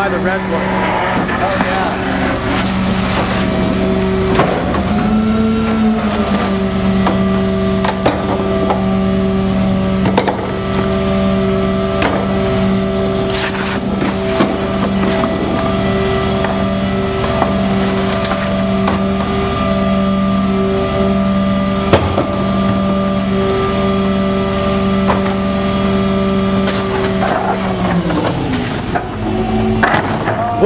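Gasoline GMC C7500 rear-loader garbage truck running with a steady hum at a fixed pitch, which bends up briefly early on and dips and recovers near the end. Scattered knocks and clatters of trash cans being tipped and banged into the rear hopper.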